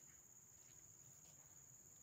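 Near silence, with a faint steady high-pitched drone of insects.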